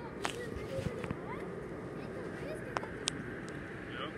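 Chatter of many people talking at once in the background, with no single voice standing out, and a few faint clicks.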